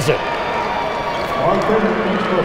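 Steady crowd noise in a basketball arena, an even wash of sound with no single voice standing out, after a made free throw.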